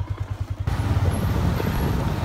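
Motorcycle engine running with a rapid low pulsing beat while riding. About two-thirds of a second in, the sound turns louder and fuller, with a rush of road and wind noise over the engine.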